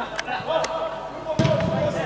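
Football kicked on an indoor artificial-turf pitch: a few sharp thuds, the heaviest a little past halfway, echoing in the hall, with players' shouts around them.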